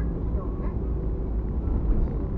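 A car's steady road and engine rumble as it drives along, heard from inside the cabin, with faint voices over it.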